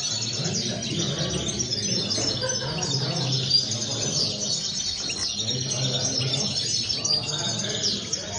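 Caged European goldfinches singing: a fast, twittering song of high chirps that runs on without a break.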